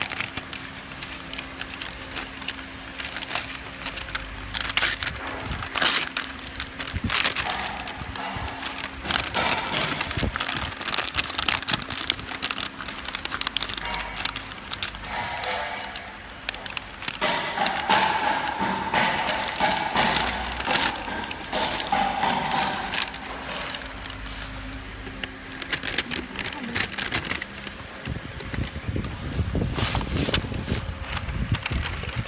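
Paper label liner being handled and pulled through a labeling machine's rollers and guides: irregular crinkling and crackling of paper, with scattered clicks and knocks.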